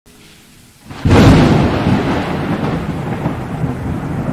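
Logo-intro sound effect: a sudden thunder-like boom about a second in, followed by a long rumble that slowly fades.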